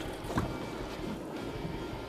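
Steady wind and water noise around an open boat on the water, with one faint tap about half a second in.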